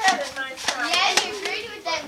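Indistinct overlapping chatter of adults and children, with a few short sharp clicks among the voices.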